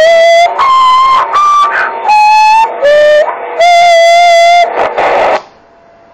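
A short electronic tune from a CB radio: about six steady beeping notes at changing pitches, loud and harsh, the longest held for about a second. A brief burst of hiss follows near the end before the sound drops away.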